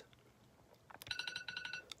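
iPhone alarm tone sounding faintly from one of two iPhone 7s: a quick run of short electronic beeps starting about a second in, cut off before a second has passed.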